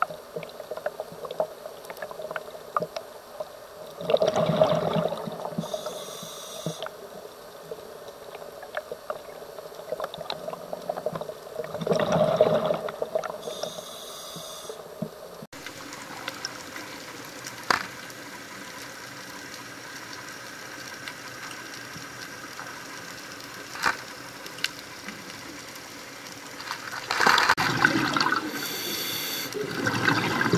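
Scuba diver breathing through a regulator underwater: three bubbling exhalations, about four, twelve and twenty-seven seconds in, each followed by a short hissing inhalation. Scattered faint clicks run between the breaths.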